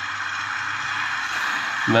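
Steady rushing noise with a low hum from a film soundtrack played through laptop speakers, growing slightly louder. A man's voice starts right at the end.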